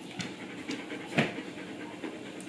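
A German Shepherd panting: soft, short breaths about every half second.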